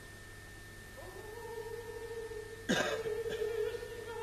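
A soft held note in the concert music starts about a second in. A single loud cough cuts across it near the three-second mark.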